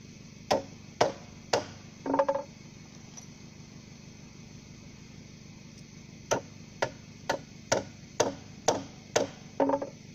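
Hammer striking timber: three blows about half a second apart, a short cluster of knocks about two seconds in, then a pause before a run of eight blows at about two a second.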